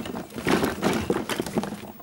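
Toys being rummaged through in a toy box: a busy run of irregular knocks and clatters.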